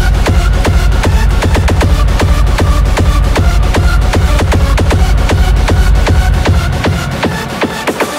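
Rawstyle (raw hardstyle) track in full drive: a heavy kick drum pounds out a fast, steady beat under a synth lead. The heavy low end falls away near the end.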